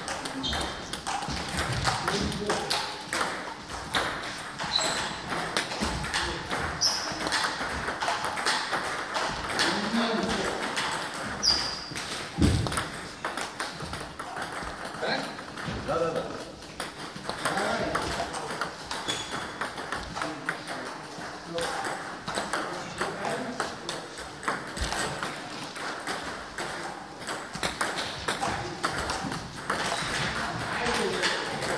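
Table tennis ball struck by rackets and bouncing on the table during serve-and-return practice: a steady stream of short, sharp clicks at an irregular pace.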